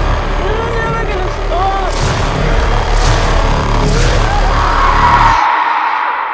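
Horror-trailer sound design: a deep pulsing rumble with three heavy hits a second apart in the middle and arching, wail-like cries over it. It builds to a rushing swell that cuts off suddenly near the end, leaving a fading ring.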